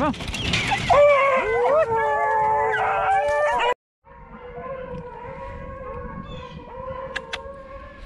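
A pack of beagles howling and bawling in long, held notes, loud and close. After a sudden cut the hounds are heard fainter and farther off, still baying steadily, with two sharp clicks near the end.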